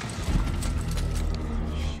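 TV drama soundtrack playing without dialogue: a low rumbling, music-like score under scattered knocks.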